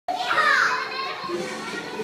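Young children's voices chattering and calling out together. One high child's voice stands out loudest in the first second.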